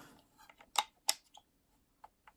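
Light plastic clicks and taps from handling a 35mm bulk film loader while the film is seated on its sprockets: a handful of small clicks, two sharper ones near the middle.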